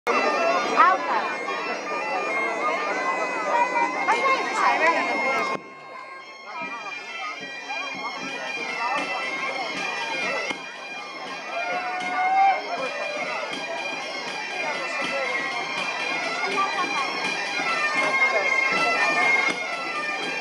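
Galician folk music for a xota: bagpipes (gaita) playing a lively melody over a held drone, with drums beating the rhythm and crowd chatter underneath. The sound drops abruptly about five and a half seconds in, then the music carries on.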